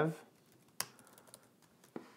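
A few keystrokes on a computer keyboard: one sharp key click just under a second in, a couple of faint ticks, and another click near the end, as a space and a colon are typed into a line of code.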